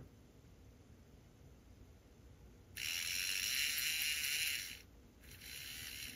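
Small electric motor and gear drive of an HO scale model steam locomotive running with a high-pitched whirring and rubbing. It starts about three seconds in, runs for about two seconds, then runs again more quietly near the end. The rubbing is the end of the worm or motor shaft scraping against the inside of the metal body.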